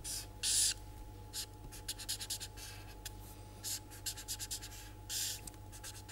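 Felt-tip marker drawing on paper in a run of short, irregular strokes, with a couple of longer strokes near the start and about five seconds in. A steady low hum runs underneath.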